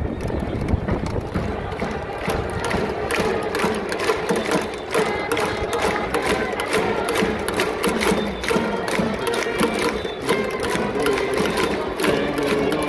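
Baseball cheering section's trumpets playing a batter's cheer song over a steady, rapid drum beat, with the crowd's voices joining in.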